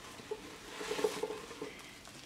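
Quiet rustling of plastic wrap and handling noise as a wrapped doll is lifted out of a wooden box, loudest about a second in.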